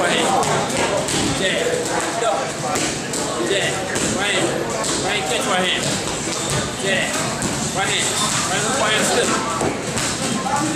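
Boxing gloves smacking into focus mitts in a run of quick punches, with voices in the background.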